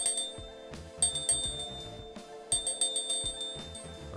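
Small brass hand bell shaken in three bursts of bright ringing, the first one short, over steady background music.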